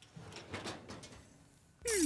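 Faint clatter of a foil-covered metal baking sheet being slid onto an oven rack, with small knocks in the first second. Near the end a louder, smoothly gliding tone sets in as the scene changes.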